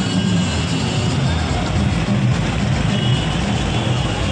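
Busy festival street: amplified music with a pulsing bass from loudspeakers over crowd voices and running auto-rickshaws and cars.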